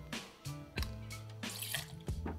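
Rum pouring from a glass bottle into a small stainless-steel jigger, a soft trickle of liquid, over quiet background music.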